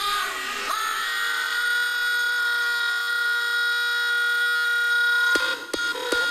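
Hardstyle DJ mix in a breakdown: held synthesizer chords with no drums or bass. Hard kick drums come back in about five seconds in.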